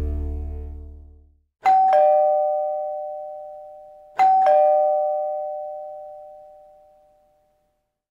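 Two-note ding-dong doorbell chime, a high note then a lower one, sounding twice about two and a half seconds apart, each pair ringing out slowly. Outro music fades out in the first second or so before the first chime.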